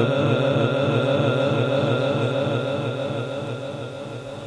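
The last held note of a male reciter's melodic Quran recitation (tilawat) dying away through a PA system's echo effect. The note repeats about three times a second and fades steadily.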